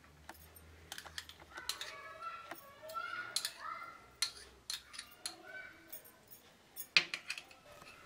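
Light clinks and taps of a spoon on a ghee container and a nonstick pan as solid ghee is spooned into the pan, with a sharper knock about seven seconds in.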